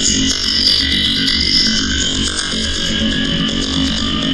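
Harsh electronic noise music: a dense, steady wall of feedback-laden sound run through an analog amplifier simulation plugin, with no breaks or pauses.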